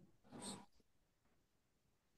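Near silence on a call line, broken by one brief faint rush of noise about half a second in.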